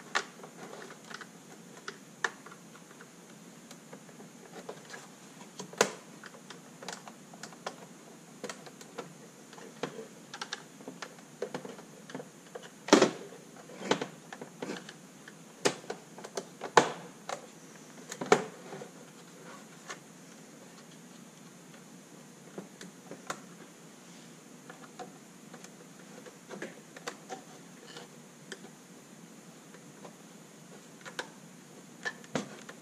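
Plastic clicks and snaps of a car instrument cluster's housing clips being pried loose with a small metal pick tool made from an engine oil dipstick. Irregular light clicks with several sharp louder snaps, the loudest about thirteen seconds in, thinning out near the end.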